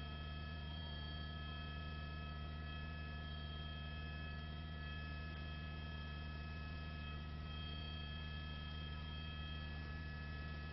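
Steady electrical hum on the broadcast audio, with a few faint steady high whines over it.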